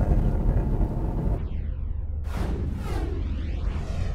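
Car cabin noise on the move for about the first second and a half, then it cuts to an outro sound effect: a deep rumble with two sweeping whooshes.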